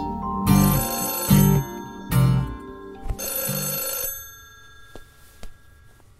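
A mobile phone's melodic ringtone: a short tune repeating in phrases, which stops about four seconds in as the call is answered.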